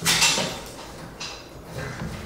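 Wire mesh panel rattling as a capuchin monkey climbs and hangs on it: a clatter at the start that fades within half a second, then a faint knock about a second later.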